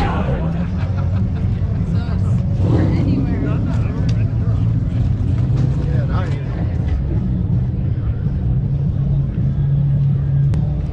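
A vehicle engine idling with a steady low hum, under people talking in the background.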